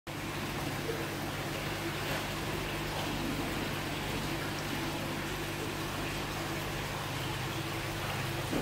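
Steady rushing water with a constant low mechanical hum underneath, as from the pump and water circulation of a koi holding vat.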